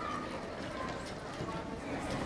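Audience applause thinning to scattered claps in a hall, with murmured voices.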